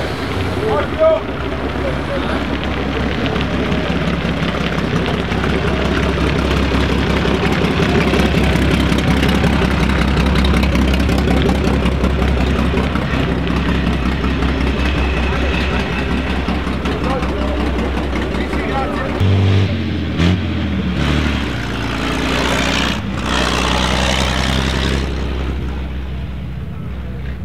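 1925 Hispano-Suiza H6C's big straight-six engine running as the car drives off. It makes a steady low drone that grows louder toward the middle and eases off again.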